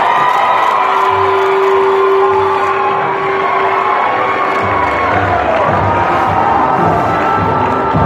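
A large indoor crowd cheering and whooping, with music playing under it and a low beat coming in about halfway through.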